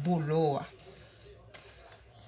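A woman speaks briefly, then faint light clicks of a fork pricking a baked sponge cake.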